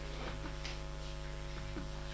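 Steady electrical mains hum, a low buzz with several even overtones, picked up through the council chamber's microphone and recording chain.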